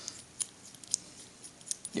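Light metallic clicks and ticks of a steel bolt being turned by hand in the end of a shop-made expanding mandrel, a handful of short, separate ticks.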